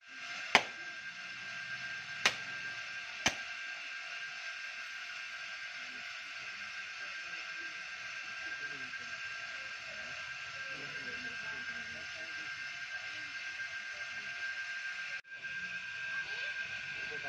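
A coconut cracked open by striking it against a hard surface: three sharp knocks about half a second, two seconds and three seconds in, the first loudest. Under them runs a steady background hiss with faint murmuring voices.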